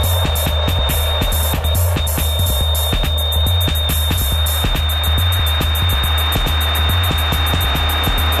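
Dubstep-style electronic music from a DJ mix: a deep, pulsing sub-bass under fast, even clicking percussion, with a steady high-pitched tone held throughout.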